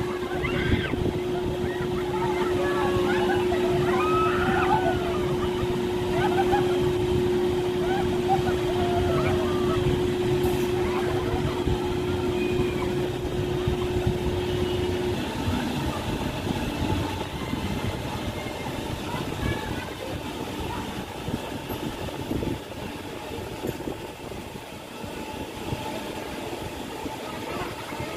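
Outdoor amusement-park thrill ride running, a steady machine hum over a low rumble, with scattered shouts and voices from people around it. The hum cuts off about halfway through and the rest is a fainter general crowd and machinery din.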